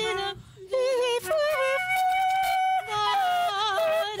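Improvised concert flute playing, with vibrato and leaps in pitch and some long held notes, alongside a woman's wordless, yodel-like singing.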